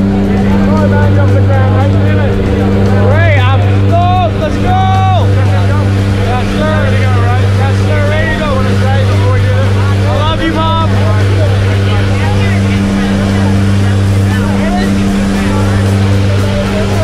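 Steady drone of a propeller jump plane's engines heard from inside the cabin in flight: a constant low hum with a strong, unchanging pitch.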